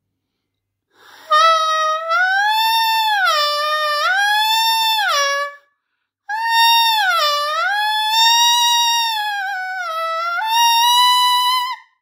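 Saxophone mouthpiece with reed blown on its own, without the instrument, giving a high, reedy tone that slides up and down in pitch as the lip tension is tightened and relaxed. Two long blown phrases with a short breath between them about halfway through.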